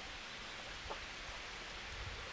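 Faint, steady outdoor background noise of the flowing river, with one faint brief chirp about a second in.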